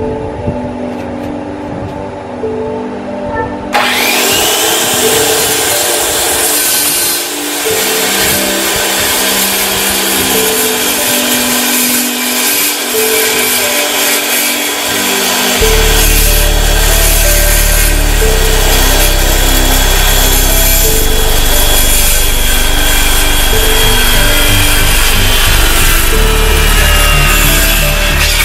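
A DeWalt circular saw starts about four seconds in, its motor whining up to speed, then runs and cuts through a wooden board until the end. Background music with a melody plays throughout, and a deep bass joins about halfway.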